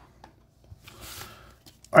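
Quiet handling of a foil booster pack as it is picked up: a few faint clicks, then a soft rustle lasting under a second.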